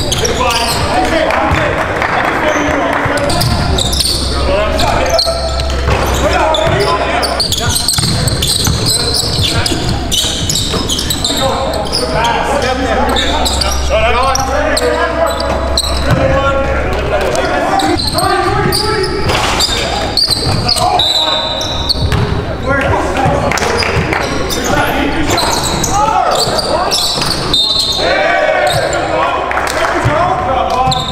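Live sound of an indoor basketball game: a basketball bouncing on the hardwood court among players' voices and calls, echoing in a large gym.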